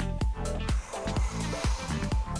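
Electronic dance music with a steady beat, about two beats a second.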